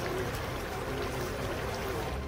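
Hot oil bubbling and sizzling steadily in a large metal vat over a fire.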